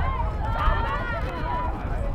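Several high-pitched voices of rugby players shouting and calling over one another during a ruck, over a steady low rumble of wind on the microphone.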